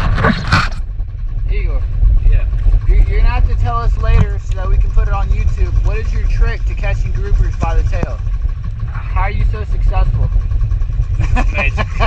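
Men's voices talking over a steady low rumble on a fishing boat's deck.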